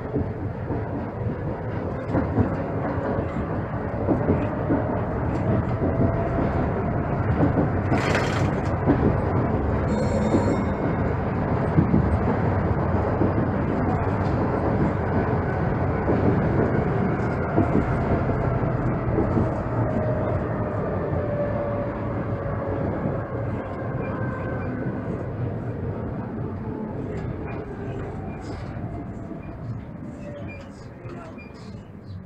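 Konstal 803N tram running on street track, heard from the driver's cab: a steady rumble of wheels on rail under a motor whine. The whine rises in pitch as the tram picks up speed, then falls slowly as it slows toward a stop. One sharp knock about eight seconds in.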